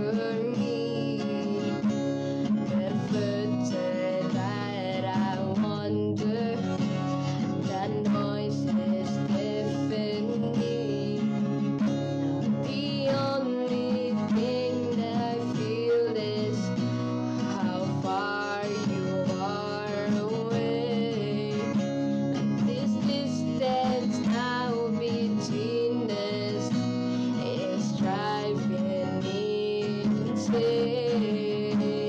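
A woman singing a slow song into a close microphone over acoustic guitar strumming.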